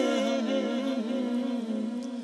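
A male voice humming a slow, wavering wordless melody without accompaniment, in the manner of a devotional chant; it fades slightly near the end.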